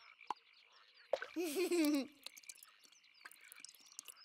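Cartoon frog croaking: one wavering, warbling croak about a second in, lasting about a second. A short sharp click comes just before it.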